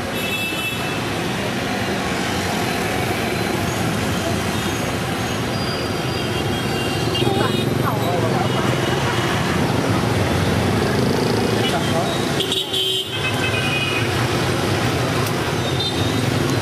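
Busy street traffic of motorbikes and cars running past, with short horn toots and indistinct voices of people nearby.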